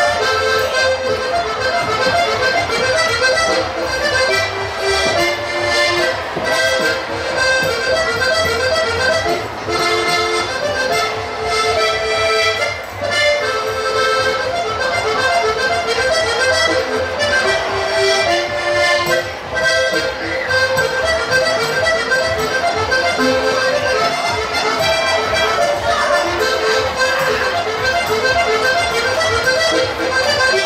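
Diatonic button accordion (Steirische Harmonika) playing a traditional folk tune, one melody line over steady accompaniment.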